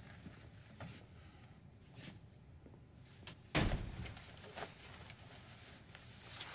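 A door shutting with a single dull thump a little past halfway, against a quiet room with a few faint knocks and footfalls.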